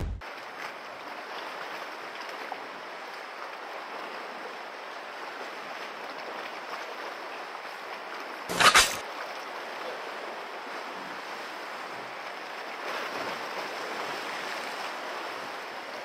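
Steady wash of the sea against a rocky shore, with wind, and one brief louder sound about halfway through.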